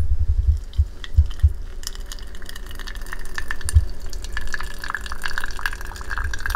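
Hot water pouring from a kettle onto coffee grounds in a metal mesh pour-over filter, trickling and splashing down into a glass carafe, with the splashing growing clearer about two seconds in. A few dull bumps sound under it.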